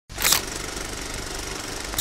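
A steady mechanical clatter with hiss that starts abruptly, with a short louder burst of noise just after it begins and another at the end.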